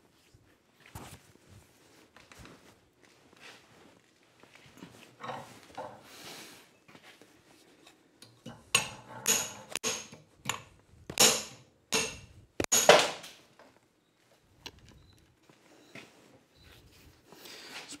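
Hammer striking a thin test piece of quenched inch-and-five-eighths rebar held in a vise, first some light handling and then about six sharp metallic blows in the second half, until the piece snaps off in a clean break, the sign that the oil-quenched steel has hardened.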